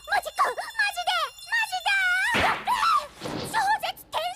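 A girl's high-pitched, excited voice speaking rapidly in Japanese, over light background music with a tinkling jingle; a breathy rush of noise a little past halfway.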